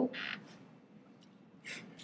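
A brief pause in a woman's speech: a soft breath just after her words stop, then near silence, and a short intake of breath near the end before she speaks again.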